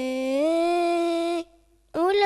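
A boy singing a devotional song solo into a microphone, unaccompanied: one long held note that steps up in pitch about half a second in and breaks off about one and a half seconds in, with the next phrase starting right at the end.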